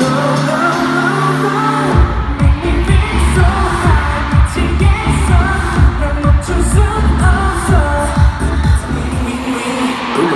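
K-pop song with singing played loud over an arena sound system. A heavy kick-drum beat comes in about two seconds in, at roughly two beats a second.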